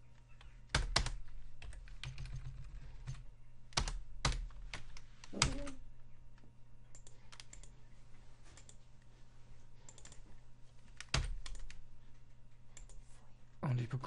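Irregular keystrokes on a computer keyboard, scattered taps with a few louder ones, over a faint steady low hum.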